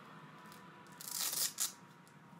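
A brief rustling noise about a second in, lasting about half a second, over a faint steady thin whine.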